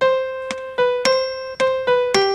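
Piano sound playing a slow melody line note by note, about five notes stepping back and forth between two neighbouring pitches: the opening C–B–C–C–B of a sight-reading phrase.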